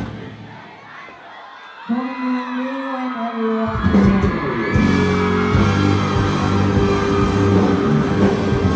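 Live band music breaks off, leaving crowd noise; about two seconds in a singer holds one long note, and a little before four seconds the full band with drums comes back in loud.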